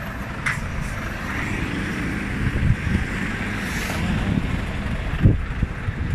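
A Volvo car-transporter truck drives past on the street, its road and engine noise swelling and fading over a few seconds, while wind rumbles on the phone's microphone.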